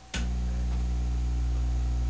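A steady, low electrical hum with a stack of even overtones, starting just after a short click.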